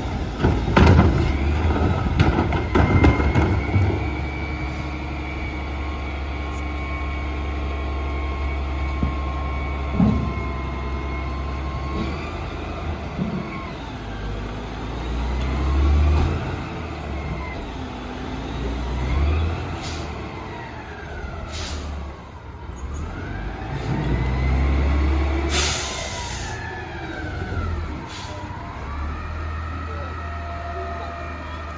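CNG Mack LEU front-loader garbage truck with a McNeilus body running, with clatter in the first few seconds as a cart is emptied into its Curotto carry can. The engine then revs up and down several times as the truck works and moves forward, with a few short air hisses in the second half.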